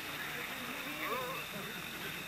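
Faint, indistinct voices talking, with a thin steady high-pitched whine behind them.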